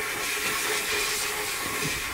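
Compressed air hissing steadily from a hand-held air nozzle, blowing loose unsintered powder off a 3D-printed part inside an enclosed depowdering cabinet.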